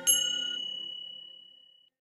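A single strike on a small metal bell about a tenth of a second in. Its high ringing tone fades away over nearly two seconds.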